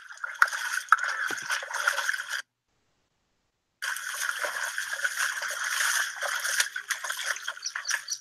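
Footsteps splashing and sloshing through shallow muddy water, an irregular patter of small wet splashes. The sound is thin, with no low end, as heard through a video call's screen share. It drops out completely for about a second and a half near the middle.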